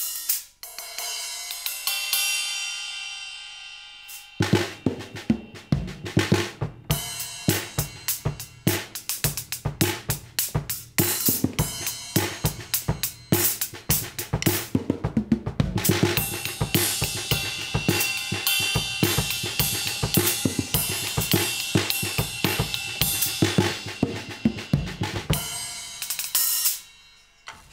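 Acoustic drum kit played with rubber silencer pads on the drums and perforated low-volume cymbals, set up to cut the noise for home playing. A single cymbal hit rings out first, then about four seconds in a steady beat starts on kick, muted drums and cymbals, with the cymbals washing more continuously in the later part.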